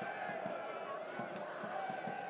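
Soccer stadium crowd ambience: many spectators' voices chattering together at a steady level, with no single voice standing out.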